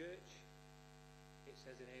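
Steady electrical mains hum with a stack of evenly spaced overtones, low and quiet, with a brief voice sound at the start and a man's speech coming back in near the end.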